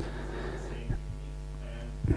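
Steady electrical mains hum, a low buzz with several overtones, with a short click at the start.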